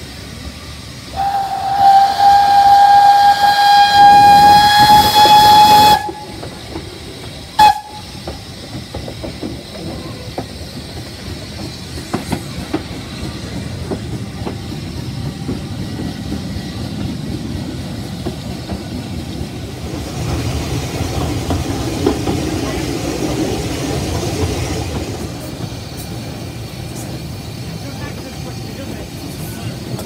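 A narrow-gauge steam locomotive's whistle gives one long, steady blast of about five seconds, then a short toot, sounded for a level crossing. Then the carriage runs along the track with a steady rumble and scattered clicks from the rails.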